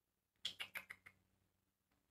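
A quick run of about five light taps or clicks about half a second in, lasting under a second, then near silence.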